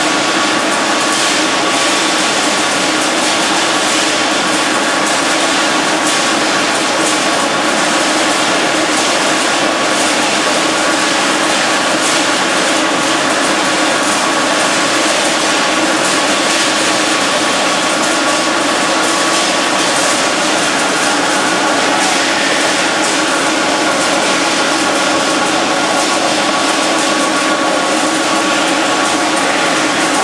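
Factory machinery running: a steady, loud mechanical din with a constant high whine throughout.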